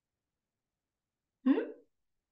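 A single short vocal sound from a person, a brief pitched burst about a second and a half in, heard over dead silence between words.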